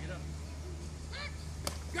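A short, distant high-pitched shout about a second in, then a single sharp knock, over a steady low rumble.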